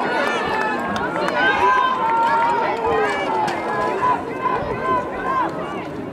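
Spectators shouting and cheering runners on, several high-pitched voices yelling over one another without pause.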